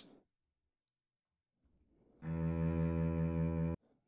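A recorded sample of one sustained low instrument note played once by a gen~ one-shot sampler patch in Max. It is triggered at MIDI note 59, so it plays slightly below its original pitch. It sounds about two seconds in, holds for about a second and a half and cuts off suddenly.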